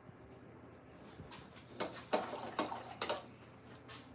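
A paintbrush working thick acrylic paint: four or five short scrubbing strokes in quick succession near the middle.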